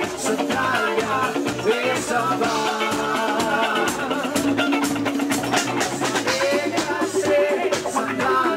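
Live band playing upbeat disco-rock: a drum kit keeping a steady beat under bass, other instruments and a sung melody.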